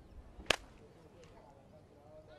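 A single sharp crack about half a second in, over a faint background.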